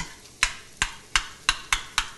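A spoon knocking and scraping against a stainless steel saucepan while stirring and breaking up cold mashed potatoes: sharp clicks, about three a second.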